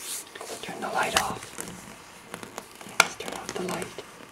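Soft, whispered voice sounds and small handling noises, with one sharp, loud click about three seconds in.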